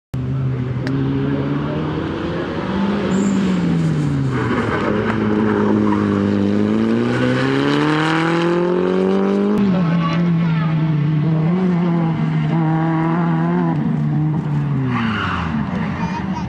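Rally car engines revving hard on a tarmac sprint stage, the pitch climbing and dropping again and again through gear changes and lifts. First a Toyota Celica rally car is heard, then, after an abrupt cut about ten seconds in, a small Fiat hatchback rally car.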